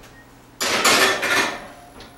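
A metal cupcake tin sliding and rattling onto a wire oven rack, starting about half a second in and fading over about a second.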